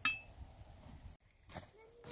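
A drop of tree sap falling from the spile into an empty metal sap bucket: a single short, bright plink with a brief ring, right at the start.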